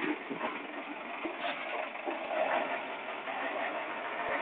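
Diesel engine of a Hyundai 270 heavy vehicle running steadily.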